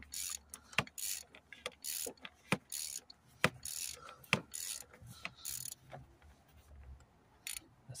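Socket ratchet clicking in repeated short strokes, about one a second, as it screws a plastic oil filter housing cap down. The strokes thin out near the end as the cap comes tight.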